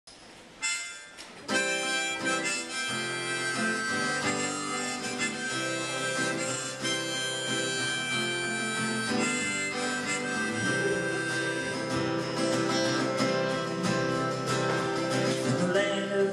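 Harmonica played over an acoustic guitar, an instrumental folk intro that starts about a second and a half in.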